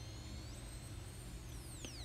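Faint background hum, steady and low, with faint thin high-pitched tones gliding downward in pitch, several falling steeply in the second half.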